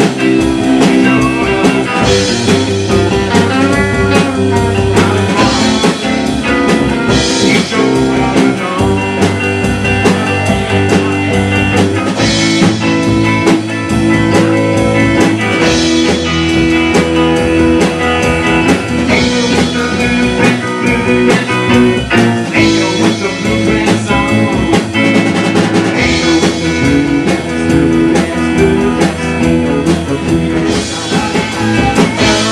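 A rock band playing a bluesy instrumental passage: electric guitar over drum kit and bass, loud and steady throughout.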